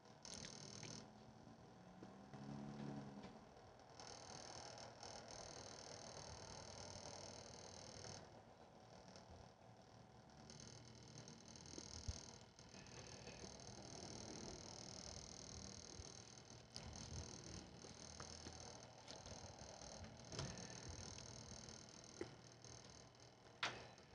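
Near silence: faint hiss of room tone, broken by a few faint clicks, the clearest about twelve seconds in.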